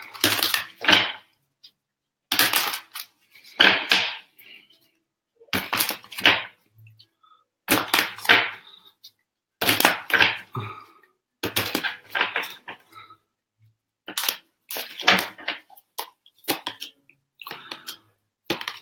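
A deck of tarot cards shuffled by hand: a string of short swishes, about one a second, with brief silent gaps between them.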